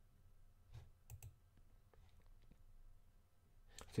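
Faint clicks of a computer mouse in a quiet room, a few close together about a second in and weaker ones after, with the start of a man's voice at the very end.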